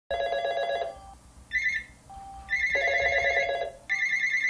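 Telephones ringing with trilling electronic rings in repeated bursts: a lower-pitched ring and a higher-pitched ring, which overlap partway through.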